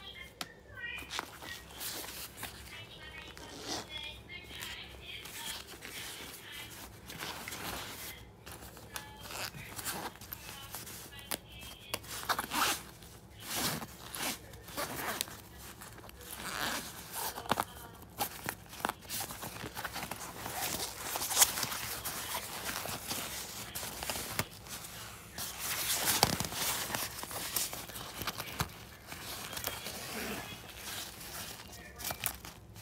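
Handling of a fabric backpack: irregular rustling and scraping of the fabric, with a zipper pulled open on a pocket.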